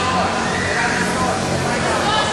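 Spectators' and coaches' voices calling out and chattering, echoing in a large sports hall, with a higher-pitched shout about half a second in.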